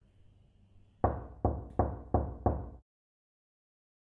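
Five quick, evenly spaced knocks on a door, about three a second, starting about a second in.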